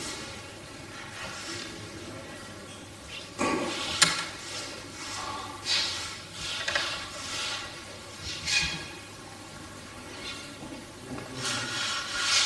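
Paper and document folders being handled and rustled, in several short swishes, with one sharp click about four seconds in, over a steady hiss of room noise.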